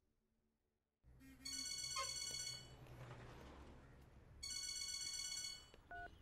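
A phone ringing twice, each ring a steady electronic tone about a second and a half long, starting after a second of silence.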